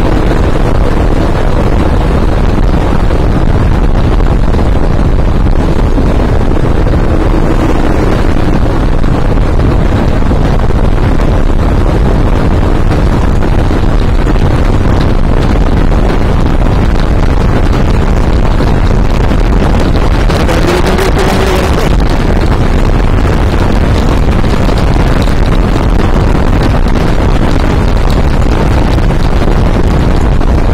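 Loud, steady wind buffeting on the microphone of a moving motorcycle, with the motorcycle's engine running faintly beneath it. About two-thirds of the way through, the hiss briefly swells.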